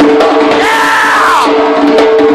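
Remo djembe played with fast hand strokes and finger rolls, over two steady held tones. A held vocal note sounds from about half a second in and falls away about a second later.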